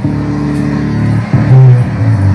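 Loud live band music over a PA, driven by heavy low sustained notes that shift pitch partway through and get loudest near the end.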